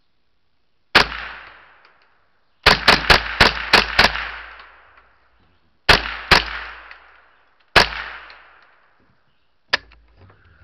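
Ruger 10/22 .22 semi-automatic rifle firing eleven shots: a single shot, then a quick string of six about a quarter second apart, then two close together, then two single shots. Each shot is followed by about a second of fading echo.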